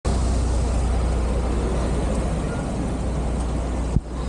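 Kyoto Bus city bus passing close by: a steady deep engine rumble with road noise, easing off near the end.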